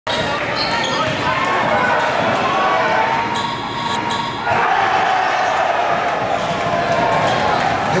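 Game sound in a gym: a basketball bouncing on the floor under a continuous din of voices and shouting. A few sharp knocks come a little past three seconds in.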